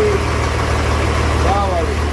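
Boat engine running with a steady low hum, and a brief voice about one and a half seconds in.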